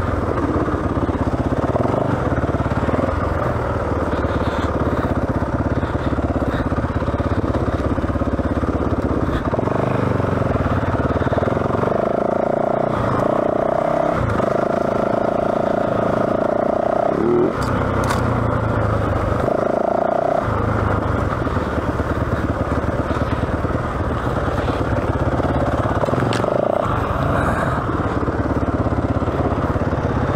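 Yamaha WR450F single-cylinder four-stroke dirt bike engine running under way on a trail, the revs shifting with the throttle, with a few seconds of steadily held revs around the middle.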